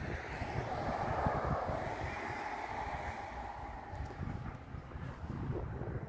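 A car passing on the road, its tyre and engine noise swelling about a second in and fading away over the next few seconds, with wind buffeting the microphone.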